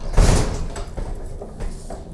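GE portable dishwasher being rolled on its casters across a kitchen floor: a loud scraping rush in the first half second, then quieter rolling noise with a few small knocks.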